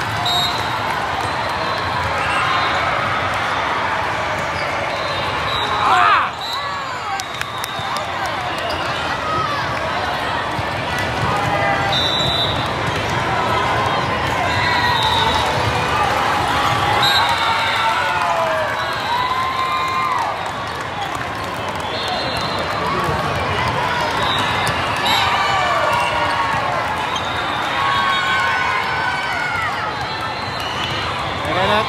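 Indoor volleyball play: the ball being hit and bouncing on the court floor amid a constant din of players' and spectators' voices, with a loud hit or shout about six seconds in.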